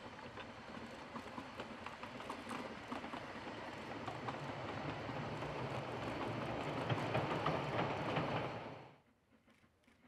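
Narrow-gauge passenger coaches rolling past, their wheels clicking in a quick rhythm over the rail joints and growing louder until a sudden cut about nine seconds in leaves only a faint background.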